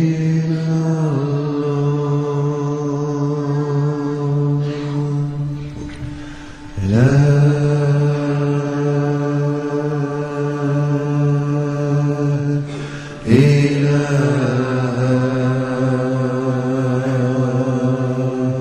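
Deep, low-pitched chanting in long held notes. Each phrase slides up into its note and holds it for about six seconds, with new phrases about seven and thirteen seconds in.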